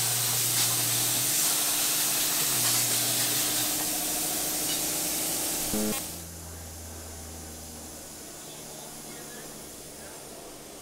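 Steady, loud hiss of air at a tire-changing machine for about six seconds. It cuts off suddenly to the quieter, low, steady drone of a twin-turboprop airliner flying overhead.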